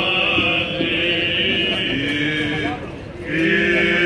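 Male Greek Orthodox (Byzantine) liturgical chanting, with long held notes and a short break about three seconds in.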